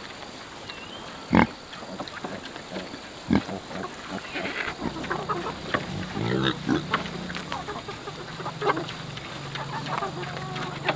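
Pigs grunting as they graze and root in grass, mixed with hens clucking, with a sharp knock about a second and a half in and a smaller one a couple of seconds later. A steady low hum sets in about halfway through.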